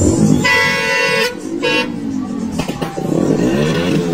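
Horn of a decorated matatu bus sounding twice: a steady blast of about three-quarters of a second, then a short second toot, over loud music with singing.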